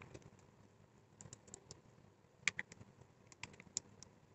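Faint, irregular clicks and taps of a wooden stick against the sides of a small cup as paint is stirred in it. The clicks come in small clusters, the loudest about two and a half seconds in.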